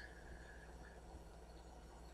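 Near silence: room tone with a faint steady low hum, during a pause in the talking.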